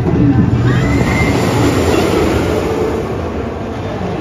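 Steel roller coaster train rolling along its track, a rumble that swells to its loudest about two seconds in and eases near the end, with a brief high squeal about a second in.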